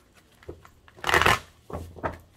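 A deck of tarot cards being shuffled by hand: a short, loud rush of riffling cards about a second in, with a few lighter card taps and slides around it.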